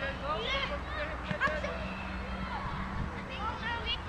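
Children's voices calling and shouting out on a playing field during a game of football, short high-pitched calls overlapping one another, over a steady low hum.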